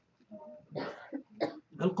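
A man clears his throat close to a microphone, in two short bursts about a second apart, before speaking again near the end.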